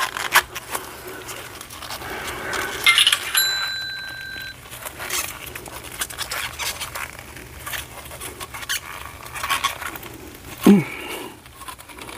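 Silicone mold creaking and rubbing against a cured UV-resin lighter case and nitrile gloves as it is pulled and worked loose, with irregular sharp clicks and a brief squeak a few seconds in. A short falling voice-like sound comes near the end.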